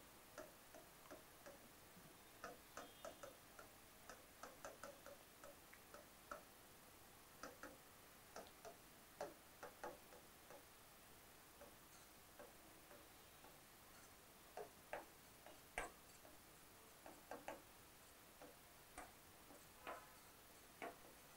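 Faint, irregular clicks and taps of a pen tip striking and lifting off the glass of an interactive display as words are handwritten on it.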